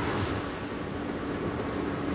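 Steady road and engine noise inside a moving car's cabin, with a faint steady hum running under it.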